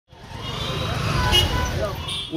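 Street traffic noise: engines rumbling and vehicles passing, with faint voices of people in the background, fading in at the start.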